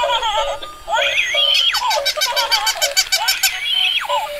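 Battery-operated toys running together: a crawling baby doll's recorded baby giggles mixed with the toys' warbling electronic chirps and tunes, with a fast run of high clicks in the middle.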